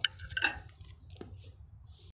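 A few light metallic clinks and taps, about three, as a winch cable's steel eyelet and wire rope are handled against the winch drum.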